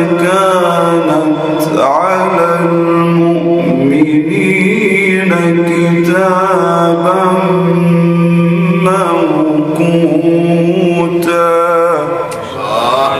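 A man reciting the Quran in melodic tajweed style into a microphone: long held notes with ornamented, winding turns, sung in several unbroken phrases.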